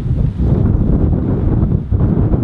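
Wind buffeting the camera microphone: a loud, gusty low rumble that kicks in just before and runs on unevenly.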